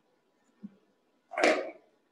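A faint knock, then a short scraping noise about one and a half seconds in, as something is moved by hand.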